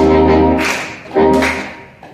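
Saxophone quartet, from soprano down to baritone sax, playing sustained chords together: one chord at the start and another about a second later, each attacked firmly and then fading away.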